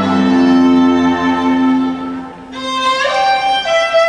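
Recorded string music led by violin, playing long held notes. About two seconds in, the low notes fade and the music dips briefly, then a higher violin line comes in.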